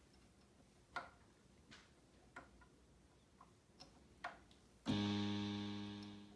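A few soft clicks, then about five seconds in the Moog Grandmother analog synthesizer sounds one low note that fades away slowly.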